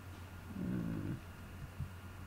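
A short, low voiced hum lasting under a second, like a person murmuring "hmm", followed by a few light clicks. A steady low electrical hum runs underneath.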